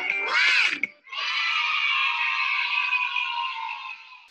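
The tail of a sung line from a children's cartoon counting song, then from about a second in a long, high cartoon pig squeal held for about three seconds.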